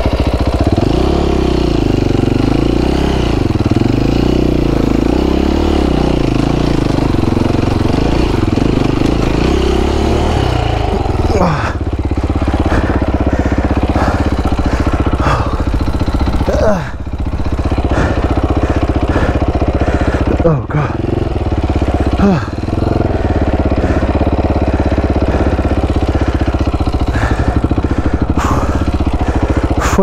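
Dirt bike engine running at low speed from the rider's seat. Its pitch wavers up and down for about the first ten seconds as the throttle is worked over rough ground, then it runs steadier with a few short throttle blips.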